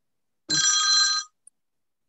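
A brief electronic ringing tone, several steady pitches at once, starting about half a second in and lasting under a second.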